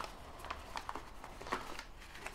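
Faint handling noise of a folded paper origami box being fitted into a cardboard game box: soft rustling with a few light taps.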